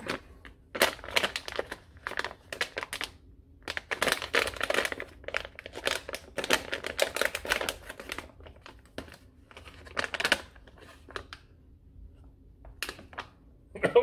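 Plastic snack bag crinkling in the hands as it is handled and torn open. The rustling comes in irregular bursts for about the first ten seconds, then thins to a few scattered crackles.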